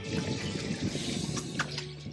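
Water splashing as a hooked bass thrashes at the surface beside the boat, with a few sharper splashes near the end.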